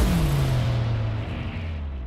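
A deep cinematic boom, a sudden hit whose low tone slides downward and then slowly dies away.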